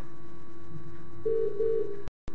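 Telephone ringing tone of an outgoing call: a double ring, two short beeps, about a second and a quarter in, over a steady low tone.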